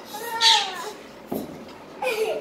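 A small child's high, whiny cry that falls in pitch, loudest about half a second in, followed by a soft thump a little past the middle.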